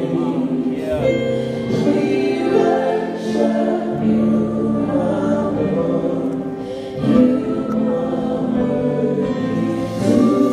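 Live gospel music: a small group of singers on microphones singing long held notes in harmony.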